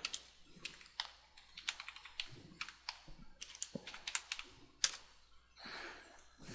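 Computer keyboard typing: a run of irregular, fairly quiet keystroke clicks as a word is typed out.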